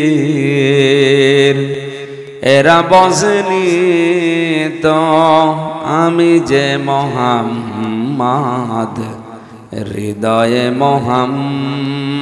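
A man's voice chanting melodically through a PA system in long, wavering held notes that glide between pitches, with short breaks about two seconds in and near ten seconds, over a steady low drone.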